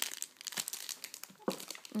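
Clear plastic bag around a candle jar crinkling irregularly as it is handled, with a single louder knock about one and a half seconds in.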